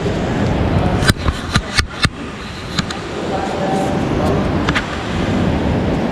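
Steady rush of an underground stream echoing in a limestone cave, with a quick run of four or five sharp clicks about a second in and two more single clicks later.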